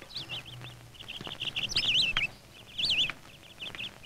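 Birds chirping: a rapid run of short high chirps, with a few louder swooping calls about two and three seconds in.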